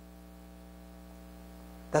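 Steady electrical mains hum, a set of even low tones holding constant, with a man's voice starting right at the end.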